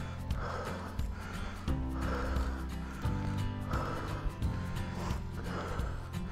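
Mountain biker's heavy breathing, a hard breath about once a second, over background music with a steady bass line.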